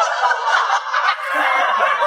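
An audience laughing together: a dense, steady mass of many voices with no single speaker standing out.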